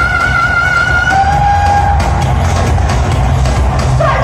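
Live pop music played loud through a concert hall's sound system, heard from the crowd: a heavy bass beat under a long held high note that drops to a lower held note about a second in, then thins out under the beat.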